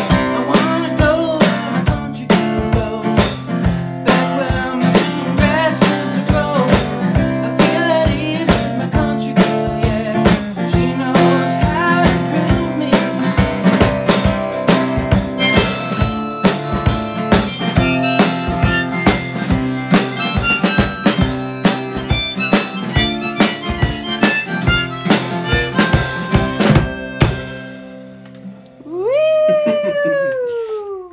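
Harmonica playing held chords over a steady beat on a snare drum struck with sticks: a live song's instrumental passage, which stops a couple of seconds before the end. It is followed by one howl-like cry that rises and then falls in pitch.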